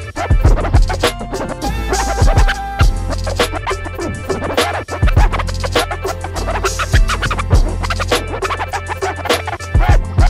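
Hip-hop DJ mix played on two turntables, with a steady heavy bass beat and record scratching cut in over it.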